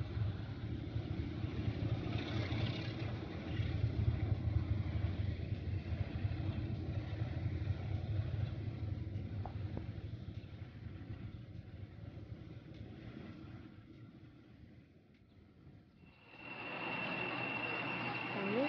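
Pair of Class 33 diesel locomotives (D6515 and 33111) heading a train, their engines giving a low, steady rumble that fades away over about fourteen seconds as the train draws off. In the last two seconds a different, louder sound comes in with a steady high-pitched tone.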